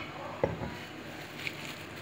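Light handling sounds on a kitchen counter: a sharp click right at the start, then a duller knock about half a second in.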